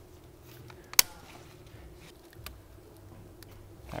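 A single sharp plastic click about a second in as the MAP sensor is pushed into its bracket, followed by a couple of faint ticks of parts being handled.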